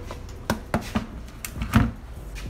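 Several short knocks and clicks, the loudest near the end, from a spare N54 intake manifold and throttle body being turned over and handled, hard plastic and metal parts bumping.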